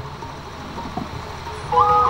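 A pause over a low hum from the stage sound system, with a small tick about a second in. Near the end, held electronic keyboard notes come in through the PA and step up in pitch, then hold steady.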